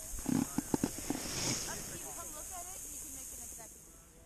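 Snowboard sliding over packed snow: a steady hiss with a few knocks in the first second, which fades as the board comes to a stop near the end. Faint voices are heard underneath.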